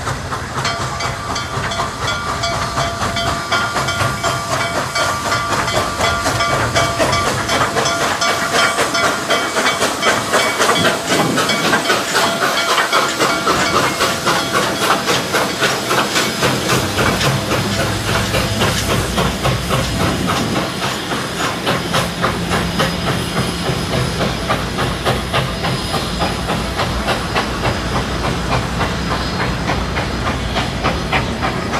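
Nickel Plate Road 765, a 2-8-4 Berkshire steam locomotive, passes hissing steam. It is followed by a train of passenger cars rolling by, their wheels clicking over the rail joints in a fast, steady clickety-clack.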